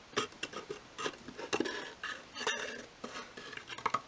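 Light, irregular clicks and taps of small wooden parts: a miniature obeche strip-wood workbench frame knocking and rubbing against the wooden walls of a dollhouse shed as it is eased out of a tight fit.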